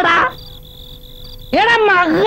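A man's drawn-out, wavering wailing cry, one ending just after the start and a second, louder one starting about a second and a half in. In the gap there is a faint steady insect drone of night ambience.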